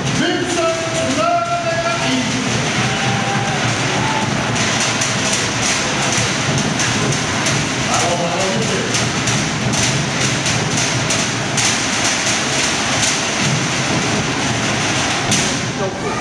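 Fast, steady drumming for a fire-knife dance, over a noisy crowd, with a few shouted calls in the first two seconds.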